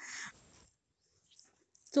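A brief, faint breathy hiss in the first moment, then near silence: a pause between spoken phrases.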